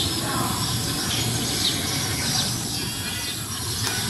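Outdoor ambience: small birds chirping on and off over a steady background hiss.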